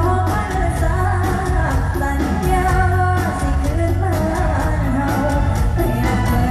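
Live Thai mor lam music: a woman singing a melodic lam line into a microphone over a loud amplified band with a heavy, steady bass beat.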